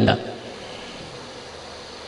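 A man's voice ends a word right at the start, then a pause filled only by a steady background hiss.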